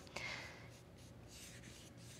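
Faint, soft swishes of a wet paintbrush stroking across watercolor paper.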